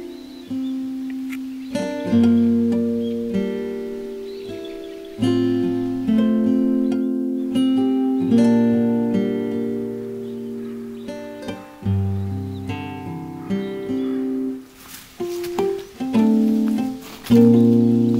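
Instrumental background music: plucked acoustic guitar chords and single notes, each struck about once a second and left to ring and fade.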